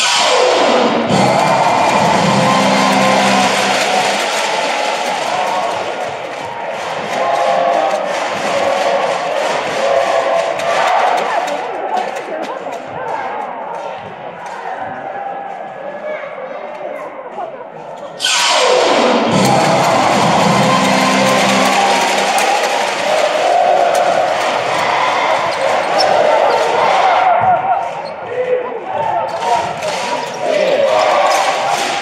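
Basketball arena crowd noise, loud and dense, with a sudden surge of cheering at the start and again about 18 seconds in, each easing off over several seconds. Music and voices run underneath.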